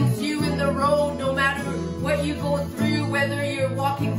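Acoustic guitar strummed in a steady rhythm while a woman sings along.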